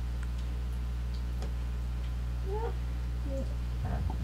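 Steady low electrical hum, with two faint, short, pitched sounds in the second half.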